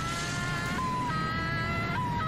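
Television soundtrack of a regeneration effect: a steady rushing roar of the energy blast under held high notes of the score that step to new pitches about a second in.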